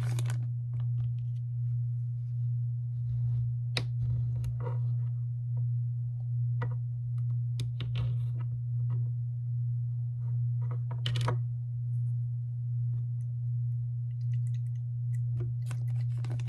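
A steady low hum, with scattered light crinkles and clicks of a plastic zip bag being handled and squeezed to mix what is inside.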